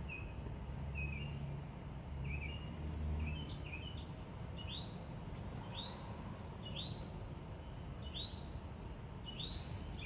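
A bird chirping over and over, one short call about every second, the calls turning into rising, arched chirps about halfway through, over a low background rumble.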